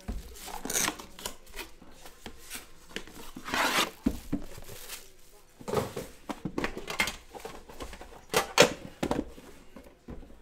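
Plastic shrink wrap crinkling and tearing in irregular bursts as it is peeled off a trading-card box and its metal tin. A couple of sharper, louder handling knocks come near the end.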